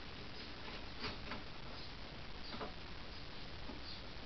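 A few faint clicks and light metal taps from hands working at a pillar drill's chuck, fitting the bolt-mounted rubber bung, over a low steady hiss; the drill motor is not running.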